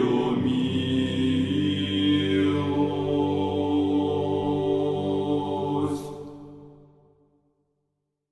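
Slow sung chant with long held notes, fading out about six seconds in to silence.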